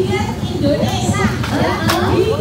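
Several voices chattering at once, overlapping, with a single sharp click near the end.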